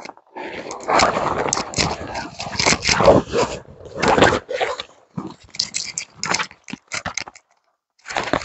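Bare branches and brush rustling and scraping against a rain jacket as a person pushes through dense shrubs, with twigs cracking and snapping. A dense rustle for the first few seconds gives way to scattered snaps.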